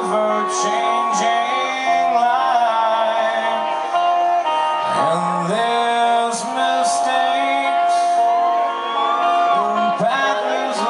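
Live rock band playing a slow song, with a male lead singer holding long notes over the band, heard from the crowd in a large hall.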